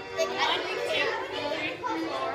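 Children's voices chattering and calling out over background music.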